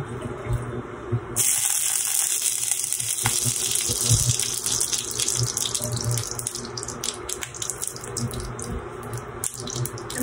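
Hot cooking oil in a frying pan sizzling and crackling after water droplets are sprinkled in. It starts suddenly about a second in and dies down near the end, the sign that the oil is hot enough to fry.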